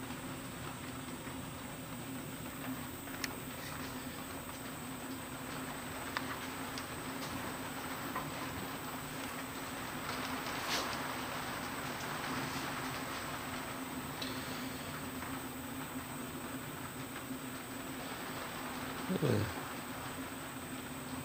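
Tormach 15L Slant-Pro CNC lathe running with a steady machine hum and a constant thin high tone, with a few light clicks and taps along the way.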